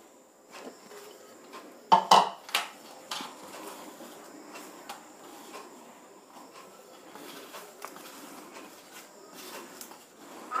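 A plate clatters against metal in a few sharp knocks about two seconds in. After that comes a hand mixing dry flour in a stainless steel bowl: soft rustling with small scrapes and taps on the steel.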